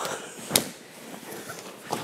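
A sharp slap about half a second in, with a softer one near the end, from two karateka's hands and cotton gi as one grabs and pulls the other down in a grappling technique; quiet room noise between.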